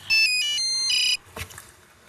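Mobile phone ringtone: a short electronic melody of quick high beeping notes, lasting about a second and stopping suddenly.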